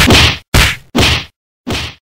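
Four sharp whacking hits in quick succession, each with a short noisy tail; the last is weaker.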